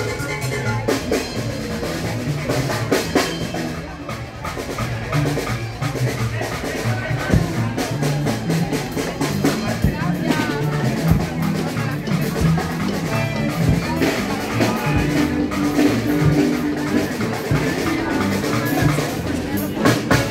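Lively music with a steady beat and a bass line stepping between notes, over people talking.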